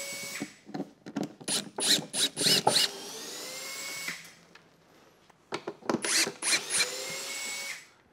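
Cordless driver backing screws out of a plywood crate panel. It starts in short trigger bursts, then runs steadily for about a second with the motor pitch rising slightly. It stops for a moment about four seconds in, then runs again as another series of bursts and a steady run.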